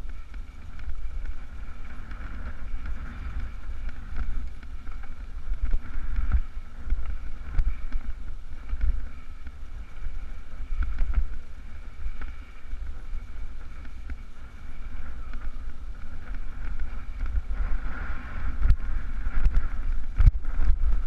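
Wind buffeting the microphone of a camera moving down a stony dirt track. Under it runs a constant rumble and rattle from the ride over the rough ground, with a few sharp knocks.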